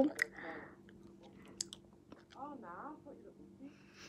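A girl sucking and licking an ice lolly: soft wet mouth clicks and slurps, with a short murmur of her voice a little past halfway.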